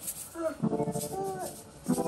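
People talking, with the faint shake-rattle of ground black pepper from a cardboard spice shaker.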